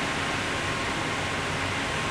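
Steady running noise of the cyclotron lab's equipment, an even hiss with a faint steady whine running through it.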